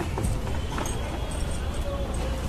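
A steady low rumble with a few light knocks, the sound of a handheld phone's microphone being moved about.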